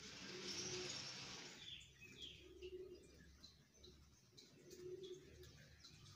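Domestic pigeon cooing softly, three low coos about two seconds apart. A brief rushing noise in the first second and a half is the loudest thing heard.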